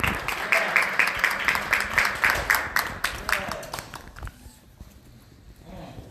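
A congregation clapping together in a steady rhythm, about three claps a second, dying away about four seconds in, with a few voices calling out over it.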